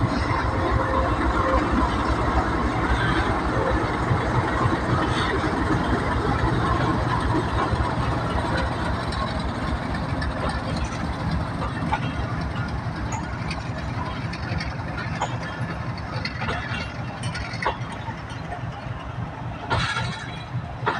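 A GEU-40 diesel-electric locomotive's engine running as the train rolls slowly past. Its steady low drone fades gradually while the passenger coaches follow, with scattered clicks of wheels over rail joints in the second half.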